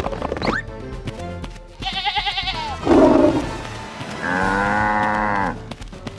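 Cartoon background music with farm-animal bleats over it: a quavering, high bleat about two seconds in, a short rough call just after, and one long bleat from about four seconds to five and a half.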